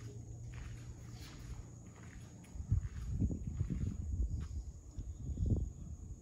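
Footsteps and handling bumps on a handheld camera: a faint steady hum at first, then irregular low thuds from about two and a half seconds in as the person walks.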